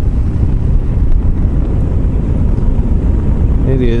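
Motorcycle riding at an even speed: a steady low rumble of wind buffeting the microphone, mixed with engine and road noise.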